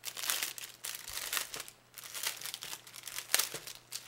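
A clear plastic bag of craft embellishments crinkling as it is handled, in irregular bursts with a short pause just before two seconds in and a sharp crackle a little after three seconds.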